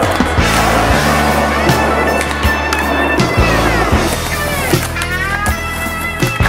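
Skateboard sounds (wheels rolling on concrete, with board pops and landings) mixed with a rock music soundtrack. The music has a steady bass, and its guitar notes slide down and then back up past the middle.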